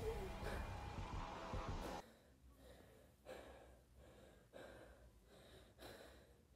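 A loud sound cuts off abruptly about two seconds in. It is followed by a person's faint, quick breathing, short breaths about once a second, like someone frightened and just woken from a nightmare.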